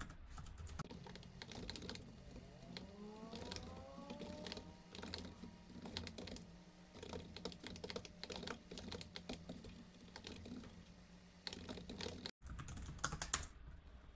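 Computer keyboard typing: quiet, irregular runs of keystrokes as code is entered.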